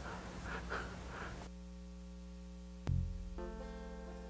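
Quiet, steady electrical hum from the church sound system and instrument amplification, with a single low thump about three seconds in and faint steady tones joining just after.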